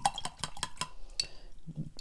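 Paintbrush clinking and tapping against a watercolour palette tray as paint is mixed: a run of light, irregular clicks.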